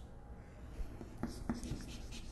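Chalk on a chalkboard as a word is written: a few short taps and scratchy strokes starting about a second in.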